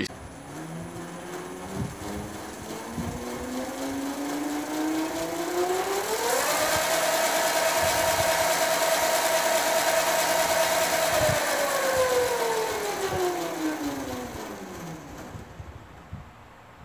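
Electric pocket bike's motor spinning up its rear wheel on the stock battery pack: a whine that climbs in pitch for about six seconds, holds steady at full speed for about five, then falls away as the wheel slows.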